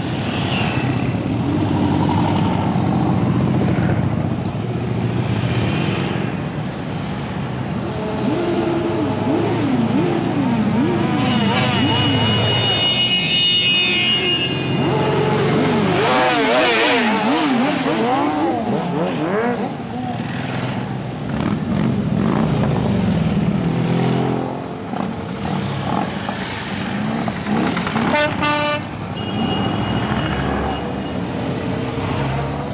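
A column of motorcycles, big cruisers and sport bikes, riding past at low speed, their engines running and revving up and down as they go by one after another.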